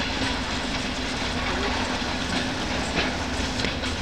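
ED4M electric multiple unit running as it departs the station: a steady rumble with a constant low hum and a few wheel clicks near the end.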